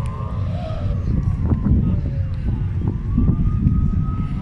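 Outdoor ambience picked up by a phone's microphone: a steady low rumble of wind and traffic, with faint, drawn-out voices of a distant student choir singing.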